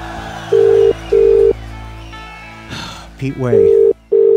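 Telephone ringback tone in the British double-ring pattern, heard over the line as a call to the UK rings through: a pair of short steady beeps about half a second in, repeated near the end after a pause of about two seconds. The tail of a rock music track fades out under the first ring.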